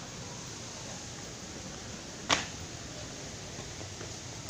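Steady low background hiss of a dark, quiet room, broken once a little over two seconds in by a single short, sharp knock.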